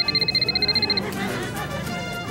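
Electronic phone ringtone trilling from inside a popcorn tub: a high, rapidly pulsed tone of about a dozen quick beeps in the first second, then stopping, over background music.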